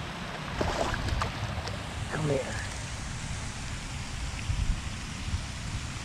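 Low, uneven rumble of wind on the microphone, with a few sharp clicks about a second in and a brief exclamation near the middle.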